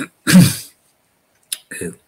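A man clears his throat once, a short, loud rasp in a pause between words; after a moment of silence he goes on speaking.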